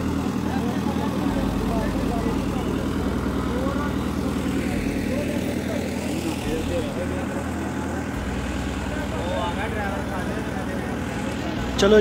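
A passenger ferry boat's engine running steadily with a low, even drone, under indistinct voices of passengers on board.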